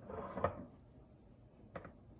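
A cloth rubbing over the rim of a glass canning jar, with a light knock about half a second in and a small click near the end.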